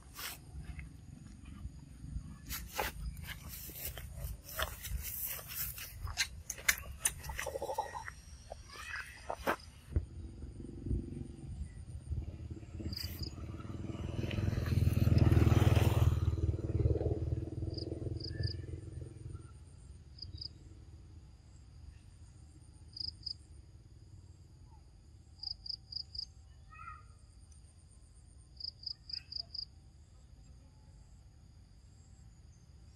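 Crackling and rustling of dry leaf litter as a baby monkey scrambles through it, with a few short calls about eight seconds in. Around the middle an unidentified low rumble swells up and dies away over several seconds. After that, insects chirp in short high pulses.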